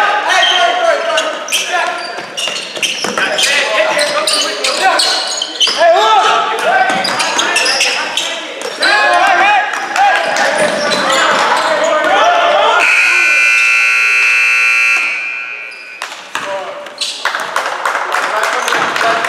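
Gym scoreboard buzzer sounding one steady blast of about two seconds, starting about two-thirds of the way in, as the clock runs out to end the second period. Before it, a basketball bouncing on the hardwood amid players' and spectators' shouting.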